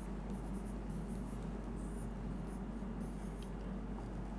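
Marker pen on a whiteboard: a few faint, short strokes as lines are drawn and numbers circled, over a steady low room hum.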